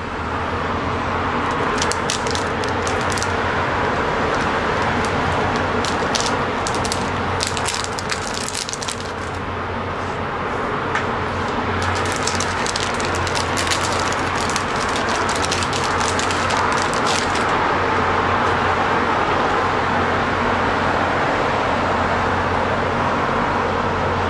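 Steady city traffic and rail-yard noise with a low hum throughout. Over it come bursts of crinkling and clicking, typical of an anti-static plastic bag being cut with wire cutters and pulled open.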